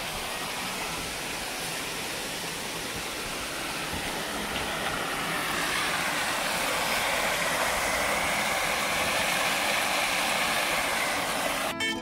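Small creek waterfall running: a steady noise of falling water that grows somewhat louder about halfway through. Acoustic guitar music comes in right at the end.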